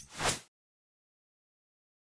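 A brief swoosh sound effect from a logo animation, fading out about half a second in, then total silence.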